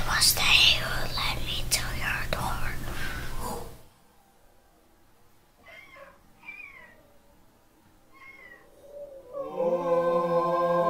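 A whispered voice over a steady low hum, cutting off about four seconds in. A few faint high cries follow in the near quiet, and choral music swells in near the end.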